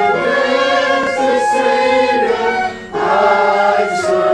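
Congregation singing a hymn together, voices holding long notes, with a brief break for breath about three quarters of the way through.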